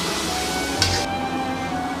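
Background music over chicken sizzling in a wok as it is stir-fried, with one brief sharp scrape a little under a second in, after which the hiss drops back.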